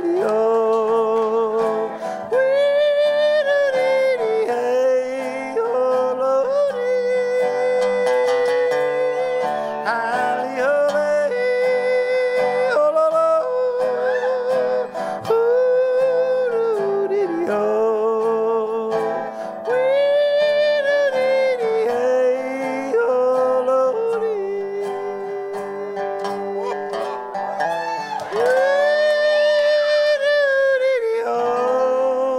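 A man yodeling without words in a cowboy song: long, wavering held notes that break between pitches in repeated phrases, over guitar accompaniment that includes a resonator guitar.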